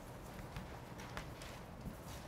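Chalk tapping and scraping on a blackboard as characters are written, a few faint, sharp taps.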